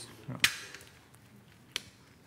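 Two sharp clicks: a loud one about half a second in and a fainter one near the end, after a short spoken 'yeah'.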